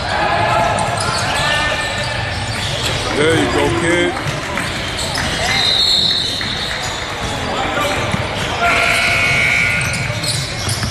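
Basketball game on a hardwood court in a large gym: a ball dribbling and bouncing, footfalls, and players and spectators calling out, all echoing around the hall. Two short high squeals stand out, one about halfway through and one near the end.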